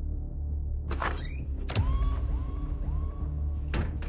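Dramatic TV-serial background score: a low sustained drone with a whoosh effect about a second in and another near the end. Just before the two-second mark there is a sharp hit, followed by a short tone that echoes three times.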